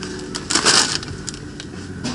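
A short rustle about half a second in, with a few small clicks, over a faint steady low hum.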